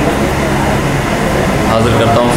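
Voices of a gathering, amplified through a public-address system, over a steady low hum.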